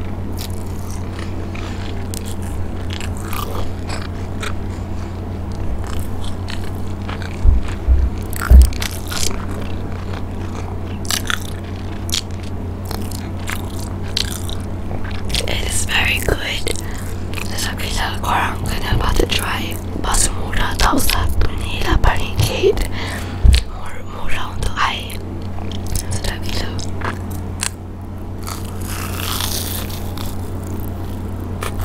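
Close-miked eating of a crumb-coated cheese corn dog: crunchy bites and wet chewing, with many small crackly clicks and a few loud thumps, over a steady low hum.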